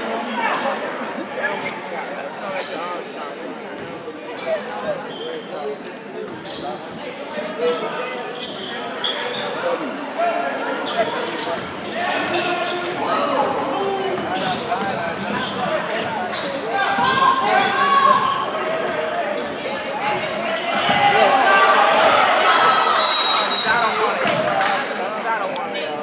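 A basketball bouncing on a hardwood gym floor as players dribble up the court, with spectators' voices echoing around a large gymnasium. A brief high shrill tone sounds near the end.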